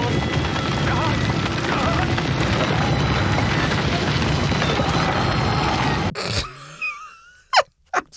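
Dramatic TV-drama soundtrack: music under a dense wash of effects as a magic spell is cast, cutting off abruptly about six seconds in. Then a few faint wavering sounds and two short sharp bursts near the end.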